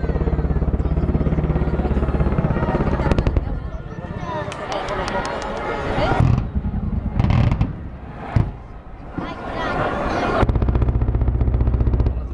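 Two long bursts of rapid gunfire, one at the start and one near the end, with scattered sharp bangs between them. This is mock air-defence fire in a naval exercise as aircraft make an attack run over warships.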